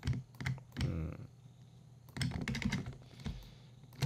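Computer keyboard and mouse clicks: irregular quick taps, bunched in the first second and again around the middle.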